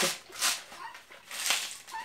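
Helmeted guineafowl calling nearby: two harsh, rasping calls of the kind Brazilians render as 'tô fraco'.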